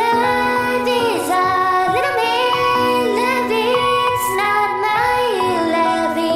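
Music: a sung ballad, with a lead voice gliding between held notes over sustained accompaniment chords.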